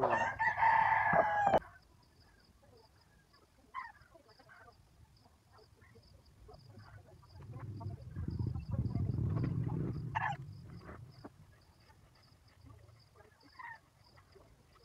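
A rooster crows once, loud, for about a second and a half at the start. Later comes a softer, low noise lasting about two seconds, and a faint high ticking repeats throughout.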